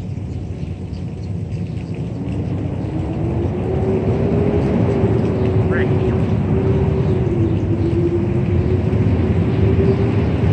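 A motor vehicle's engine running: a low rumble with a droning hum that wavers slightly in pitch, growing louder about three seconds in.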